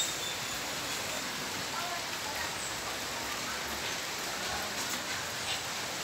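Steady hiss of water after a flood-bringing typhoon, with a few faint bird chirps over it.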